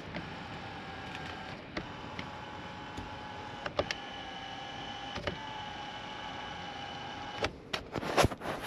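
Electric motor of a newly fitted power door mirror on a Suzuki SX4, whirring steadily in about four short runs. Each change of direction is marked by a click, and it stops near the end.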